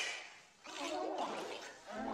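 An electronically distorted, pitch-shifted cartoon character voice, starting about half a second in after a short lull.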